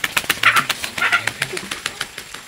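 A long-handled digging tool scraping and knocking in dry, stony soil, making a rapid, uneven run of clicks and scrapes as it digs out cassava roots.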